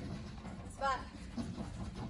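A single short word called out by a woman, over a steady low background hum.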